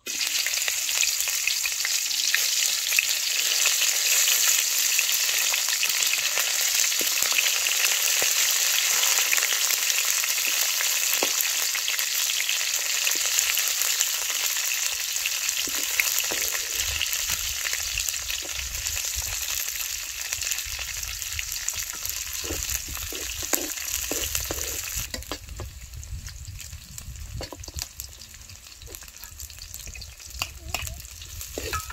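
Chopped vegetables dropped into hot oil in a steel wok, sizzling loudly at once and stirred with a metal ladle. The sizzle eases in the last few seconds, leaving ladle scrapes and taps on the wok.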